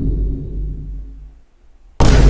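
Tail of a deep, loud boom sound effect, a dramatic bass hit dying away over about a second and a half until it is nearly gone near the end.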